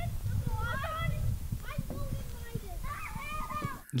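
A young girl's high voice calling out as she plays, distant and thin in an outdoor recording over a low rumble.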